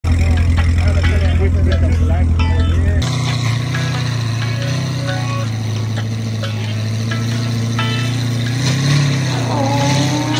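A V8 car engine idling steadily, with people talking over it. The first three seconds carry a louder deep rumble, and the revs begin to rise near the end.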